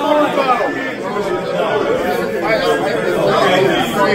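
Several men's voices talking over one another in an indoor crowd, unclear chatter with no single voice standing out.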